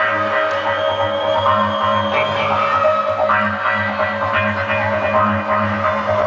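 Live rock band playing on stage, heard from the crowd: held guitar chords over a pulsing bass line.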